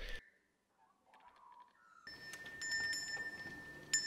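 Small metal handbell rung repeatedly, a steady high ringing with sharp strikes, starting about halfway in after near silence. It is the feeding-signal bell the birds are being trained to link with bread.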